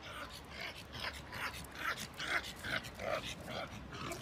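A pug panting while it trots, in quick short puffs about three a second.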